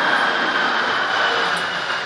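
Steady mechanical whirr and hum inside a stationary bus's cab, holding an even level and easing off slightly near the end.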